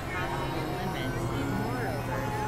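Layered experimental electronic drone soundscape: a steady low hum under warbling, gliding tones and garbled, speech-like fragments.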